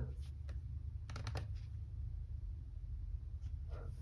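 A few light clicks from the Dell Inspiron 3511 laptop's keys and touchpad, with a quick cluster of them about a second in, over a low steady hum.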